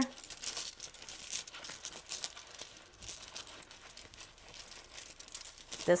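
Hands rummaging among crystal cabochons: an irregular light rustling and crinkling with scattered small clicks.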